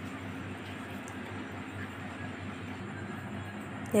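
Steady background hum and hiss of the room, with no distinct knocks or clicks.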